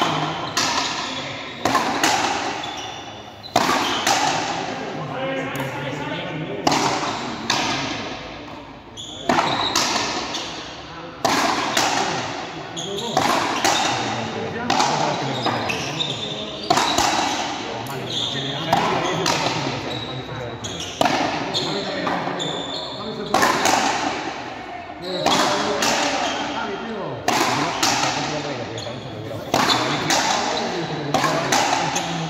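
Frontenis rally: the hard rubber ball cracking off strung racquets and the concrete frontón walls, about one sharp hit a second, each ringing out in the large hall's echo.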